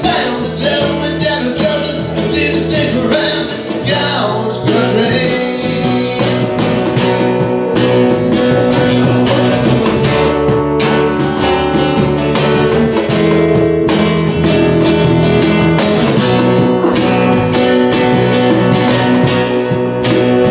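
Live band music: an acoustic guitar strummed steadily over a bass guitar line. A sung line trails off in the first few seconds, and the rest is an instrumental break of strumming that grows a little louder.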